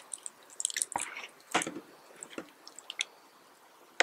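Close-miked squishing and crackling of a fried chicken burger as it is squeezed and pulled apart by hand: soft wet sounds from the bun and sauce and crisp crackles from the breaded patty. The loudest crunch comes about a second and a half in.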